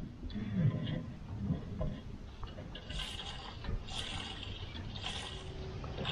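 Diesel fuel pouring from a fuel can's spout into a Kubota BX23S tractor's fuel tank, gurgling in swells about once a second.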